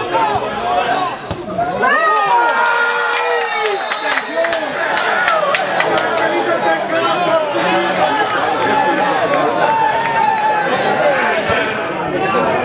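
Small crowd of spectators shouting and cheering with many voices overlapping, swelling about two seconds in as a goal is scored.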